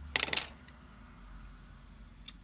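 A brief clatter of small objects being handled, a quick rattle of clicks lasting about a quarter of a second near the start, then faint room noise.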